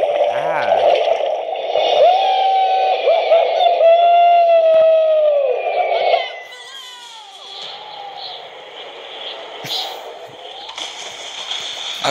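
A long, loud, high-pitched yell from an animated character diving off a cliff, held for about six seconds with its pitch wavering, then breaking off into a much quieter stretch of background sound.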